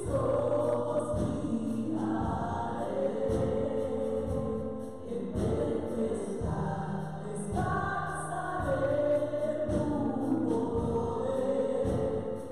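Live gospel worship song: several women singing together into microphones over a band with drums and keyboard keeping a steady beat.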